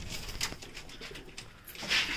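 Domestic pigeons cooing in a loft, with a few light clicks.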